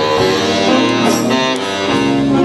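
A school jazz band playing live, with saxophone, piano, electric guitar and drums sounding together in a busy passage of many notes at once.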